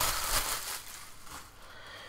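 Clear plastic bag crinkling as the projector comes out of it, loudest at the start and dying away within about a second and a half.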